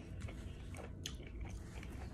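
A person chewing food with the mouth closed, faint, with a few soft crunchy clicks around the middle.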